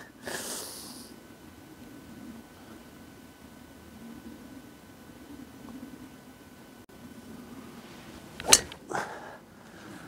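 Driver striking a golf ball off the tee: a single sharp crack near the end, with a brief ring after it.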